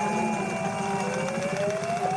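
A siren wailing, its pitch rising steadily through the second half, over a steady low engine hum.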